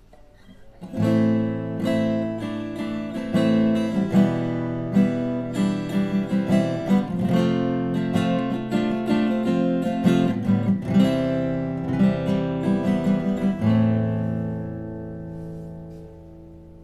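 Cetta LV33SCE grand-auditorium cutaway acoustic guitar strummed in a run of chords from about a second in, ending on a last chord that rings out and fades over the final couple of seconds.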